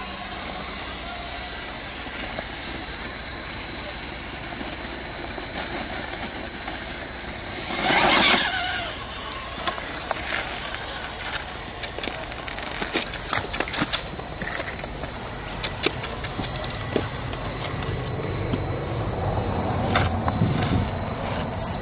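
Axial XR10 radio-controlled rock crawler working over rock: a faint steady whine from its electric drivetrain, with sharp clicks and knocks of tyres and chassis on stone, most of them in the second half. A brief loud rush of noise comes about eight seconds in.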